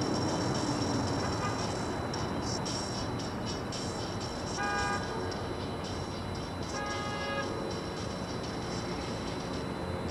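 Steady outdoor background rumble and hiss, with two short pitched tones about five and seven seconds in.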